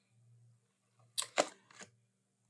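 A few short, sharp clicks or taps in quick succession a little over a second in, over a faint steady low hum.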